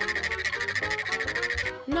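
A comic sound effect: a rapid, evenly pulsed buzzing trill lasting nearly two seconds, over light background music, filling an awkward silence.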